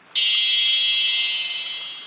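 A single high electronic beep, like an alarm or buzzer tone, held steady for nearly two seconds and fading slightly before it stops.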